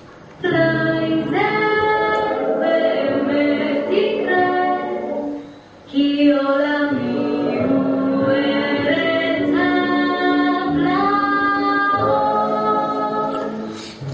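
A female voice sings a slow, dreamy song from the Hebrew dub of an animated film soundtrack. It comes in two long phrases of held notes with vibrato, with a short break about five and a half seconds in.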